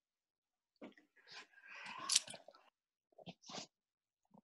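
Short, irregular bursts of rustling and clicking noise from a participant's open microphone on a video call, between stretches of dead silence: one longer burst from about a second in, loudest a little after two seconds, then two brief ones near the end.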